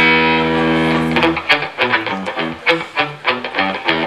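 Live electric guitar band, fed from the mixing desk: a held, ringing guitar chord cuts off about a second and a half in, followed by a run of short picked notes, about three or four a second.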